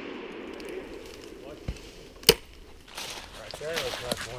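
A single sharp .22 rifle crack about two seconds in, over low rustling, with faint whines near the end.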